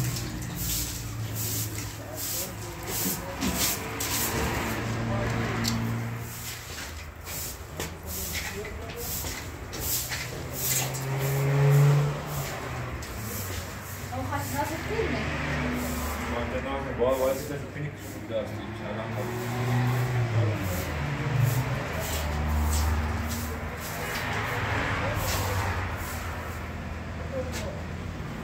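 Swishing strokes of a long straw broom sweeping a dusty concrete floor, under people talking.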